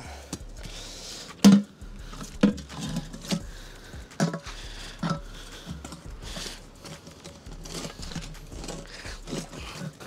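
A hammer knocking on a small steel safe caked in mud: several sharp blows about a second apart, the loudest about one and a half seconds in, then lighter taps. The safe is still shut, and the blows are an attempt to break it open.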